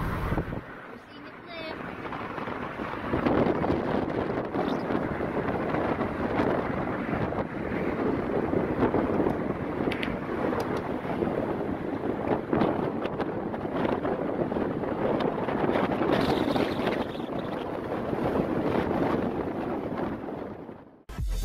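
Wind buffeting the camera microphone: a loud, rough, unsteady rush that starts about two seconds in.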